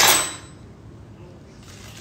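A single sharp kitchen clatter, like a dish or the oven door being set down or shut, at the very start, fading within half a second, then only quiet room sound.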